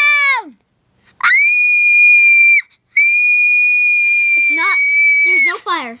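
A child's voice screeching: a short falling cry, then two long, very high, steady-pitched screeches, the second longer, breaking into a few quick syllables near the end.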